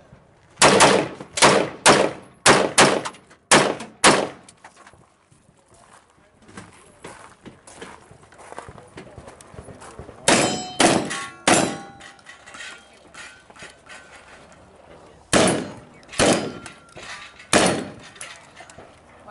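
Gunfire in quick strings: about nine shots in the first four seconds, a pause with small clicks and handling noise, then four quick shots about ten seconds in and five more near the end. The later strings are a shotgun being fired at steel targets.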